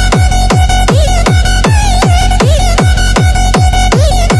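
Hard techno: a fast, steady kick drum, each hit dropping in pitch, under a sustained synth tone that bends briefly every second or so.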